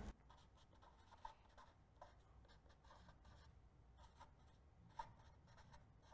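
Very faint scratching of a pen writing on a sheet of paper, with small scattered ticks as strokes start and stop.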